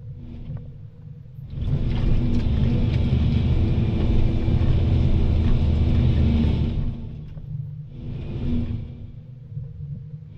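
Volvo EC220DL excavator's diesel engine running steadily. A loud rushing surge sets in about a second and a half in and lasts about five seconds, with a shorter one near the end, as the machine works.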